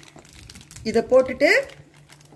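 Plastic bag crinkling faintly as chocolate coins are tipped out of it. A short spoken utterance comes about halfway through.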